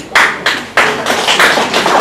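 Audience clapping: a couple of separate claps, then applause filling in and holding steady from under a second in.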